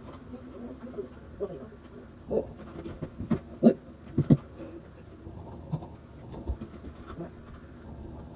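Faint, muffled voices in the room, with a few short knocks a little past the middle.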